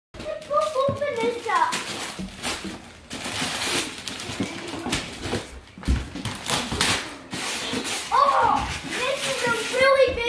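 Gift-wrapping paper being ripped and crumpled in long, irregular tearing rustles. A child's high voice calls out near the start and again near the end.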